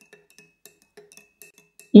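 Spoon stirring in a ceramic mug of water to dissolve a powder: a string of faint, irregular clinks against the mug's wall, with a weak high ring.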